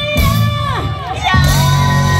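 Live rock band with a singing voice over a cheering crowd: the sung line slides steeply down just before the middle, then the full band comes back in with a long held vocal note.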